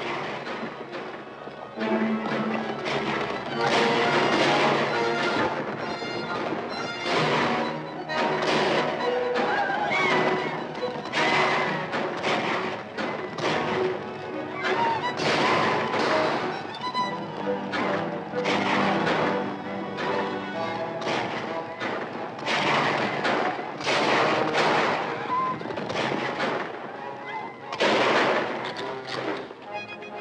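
Dramatic orchestral action score from a 1950s film soundtrack, with sharp gunshots about every second throughout.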